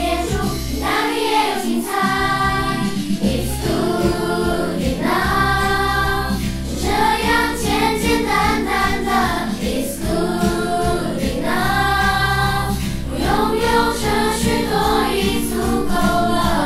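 A group of primary-school children singing a light, upbeat Mandarin song together over instrumental accompaniment, in phrases of long held notes.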